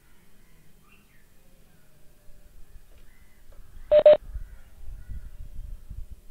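Two short electronic beeps in quick succession about four seconds in, each a steady mid-pitched tone, followed by a low rumble of background noise.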